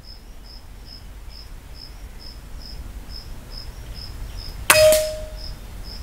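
A single air rifle shot a little under five seconds in: a sharp crack followed by a short ringing tone that fades within about a second. An insect chirps faintly and steadily, about twice a second, throughout.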